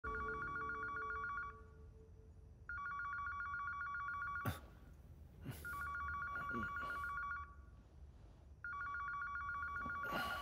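A hotel-room telephone ringing with an electronic warbling ring, four ring bursts each about a second and a half long with short pauses between them. A few brief noises fall between the rings, the sharpest about halfway through.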